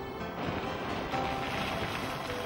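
A car driving fast along a dirt road: a rush of tyre and wind noise that swells about half a second in, over background music.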